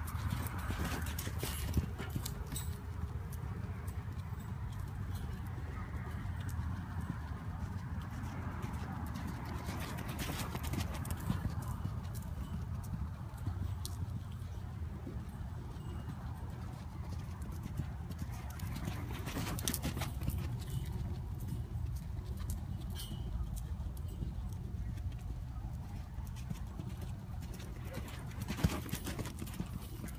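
Morgan gelding's hooves beating on soft arena dirt as he canters under a rider, a steady run of dull hoofbeats with a few sharper knocks.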